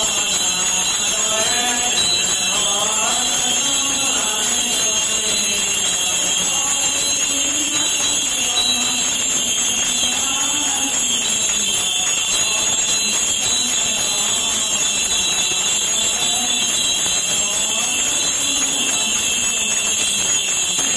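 Byzantine chant in an Orthodox church: voices singing a slow, wavering melody without a break, over a steady high hiss.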